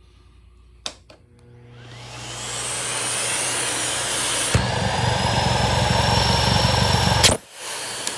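Miele bagged canister vacuum switched on with a click, its motor spinning up with a rising whine. About four and a half seconds in, the sound turns abruptly lower and rougher as the airflow is choked, the sound of a clog: it sounds like it's not breathing. It is switched off with a click near the end.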